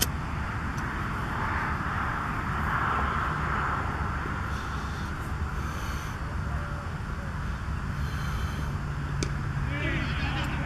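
Steady low rumble of open-air background noise with faint distant voices. Near the end comes one sharp crack of a cricket bat hitting the ball, a delivery that is played for a single.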